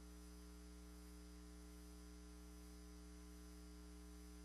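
Near silence with a steady electrical mains hum.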